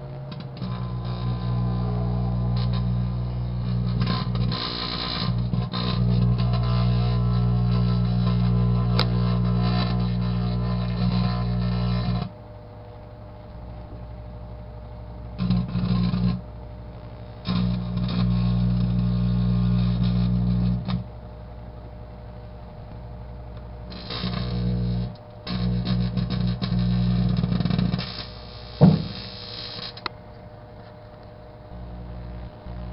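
Steel wool arcing and burning inside a running microwave oven. A loud, crackling electrical buzz comes and goes in spells of a few seconds, with the oven's quieter steady hum between them. There is one sharp pop near the end.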